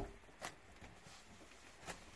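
Faint handling sounds as a hand works the yellow lever of a brass quarter-turn ball valve on the water heater's supply pipe: two short clicks, one about half a second in and one near the end, over quiet room tone.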